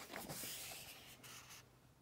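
A page of a hardcover picture book being turned by hand: a soft paper rustle that fades out about a second and a half in.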